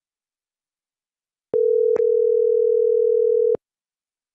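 Telephone ringback tone: a single two-second ring of a steady tone, the sound a caller hears while the other phone rings. It begins about one and a half seconds in, with a short click half a second into the ring.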